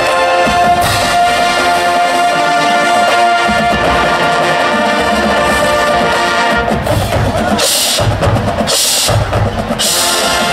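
High school marching band playing its competition show: brass holding sustained chords, with low percussion coming in about three and a half seconds in and three loud crashes near the end.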